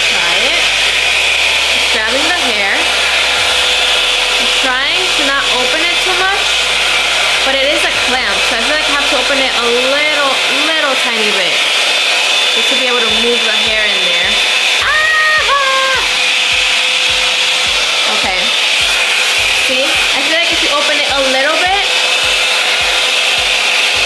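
Revlon One Step Blowout Curls hot-air curling wand blowing on its highest heat setting: a steady, unbroken rush of air with a constant hum.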